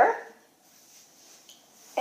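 A woman's voice trailing off, then near silence with a couple of faint soft taps as red plastic cups are set down on carpet.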